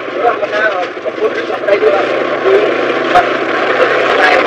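People's voices talking over a dense, noisy background, with a sharp knock about three seconds in.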